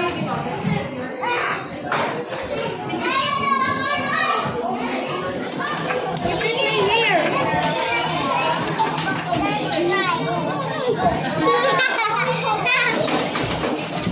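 A crowd of young children playing, with many overlapping voices chattering and calling out together. A child's high-pitched voice stands out about three seconds in.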